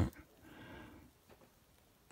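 A dog barking faintly once, about half a second in, otherwise near silence.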